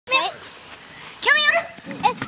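Two short high-pitched cries whose pitch wavers and rises, one at the very start and one about a second and a quarter in.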